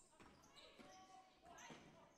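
Near silence: faint basketball gym ambience of a game in play, with distant court sounds and voices.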